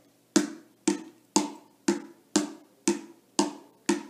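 Small wooden hand drum with a skin head struck with a pair of wooden drumsticks: eight even beats, about two a second.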